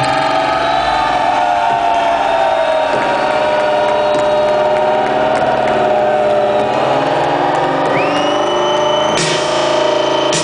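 Live rock band playing loud: electric guitars hold long sustained notes that bend slowly in pitch, a high tone slides up and holds about eight seconds in, and sharp drum hits come back in near the end.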